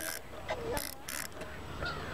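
Spinning fishing reel being cranked to wind a hooked rock bass up to hand: a few short, high-pitched rasping bursts from the reel's gears.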